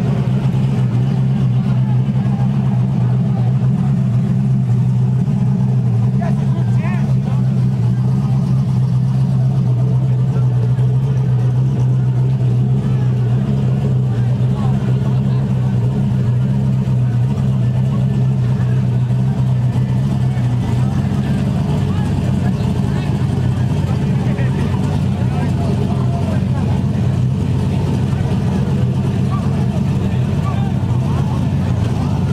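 Turbocharged drag-race Nissan pickup's engine idling loudly and steadily, its note shifting about two-thirds of the way in. People are talking in the background.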